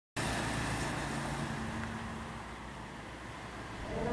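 Road traffic noise on a street, with a motor vehicle's low engine hum that fades over the first couple of seconds.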